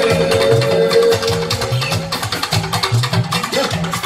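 Live band music: a rhythmic bass line under dense, busy percussion, with electric guitars. A held high note fades out about a second in.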